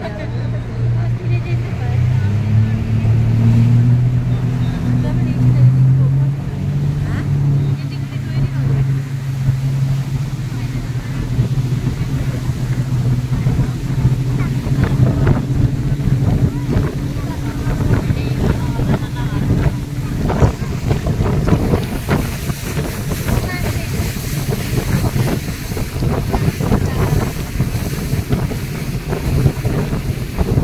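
Motorboat engine running with a steady low hum, with wind on the microphone. The wind hiss grows stronger in the last third as the hum fades into it.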